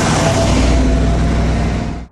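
A car rushing past close by: a loud, steady rush of noise over a deep engine rumble that cuts off abruptly at the end.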